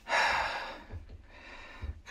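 A man's audible breath, one short hissing rush of air that fades out within about a second.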